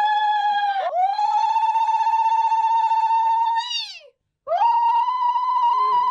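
A woman's zaghrouta, the high trilled ululation that marks a wedding celebration: long wavering trills, each falling in pitch at its end, broken about a second in and again after about four seconds by short pauses for breath.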